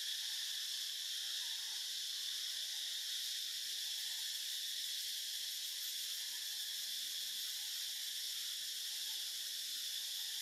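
Steady, unbroken chorus of insects in the forest canopy, a high shrill buzz.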